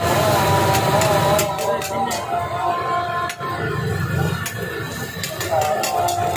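A metal spatula clinking and scraping on a flat steel griddle in repeated short strikes, over busy street-stall chatter and voices.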